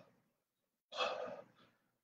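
A man's heavy breath, a sigh, about a second in, with the tail of another right at the start: a man catching his breath, winded after an exhausting workout.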